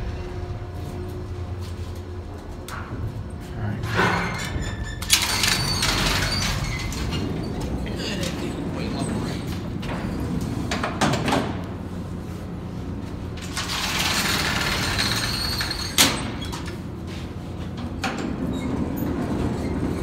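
The manually worked sliding hoistway door and collapsible scissor gate of a 1965 Otis traction elevator being slid open and shut, in two long sliding stretches, each ending in a sharp latch click; the second click is the loudest. A low steady hum from the elevator runs underneath.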